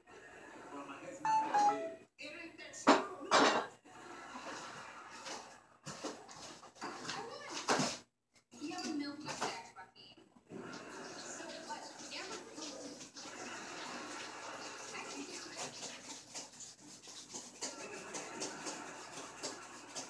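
Dishes and kitchen containers clattering and knocking as they are handled and put away into a refrigerator, with a few sharp, loud clinks in the first eight seconds and quieter handling after.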